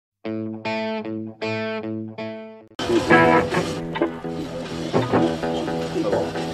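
A short intro sting of four sustained chords, the last one fading out. About three seconds in it cuts to live amplified electric guitar notes over stage and amp noise during a band's soundcheck.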